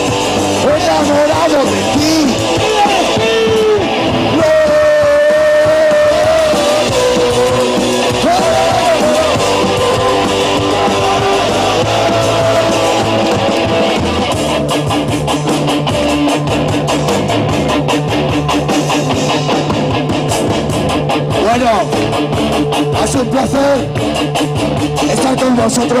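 Live punk rock band playing loudly, with electric guitar and voices singing. The bass and drums grow heavier about halfway through.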